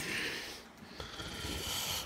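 A man breathing close to the phone's microphone: a short soft breath at the start and a longer one through the second second.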